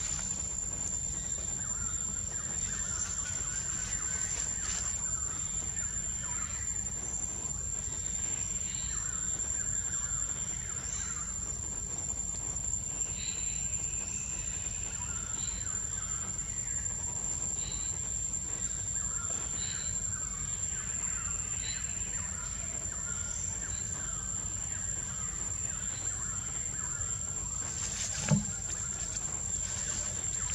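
Tropical forest ambience: a steady high-pitched insect drone with scattered short bird chirps throughout, over a low steady rumble.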